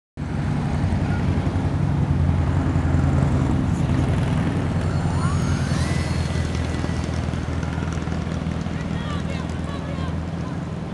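Heavy wind rumble and beach surf, with a radio-controlled model airplane's motor winding up in a rising whine about five seconds in and holding a steady high note as the plane takes off from the sand.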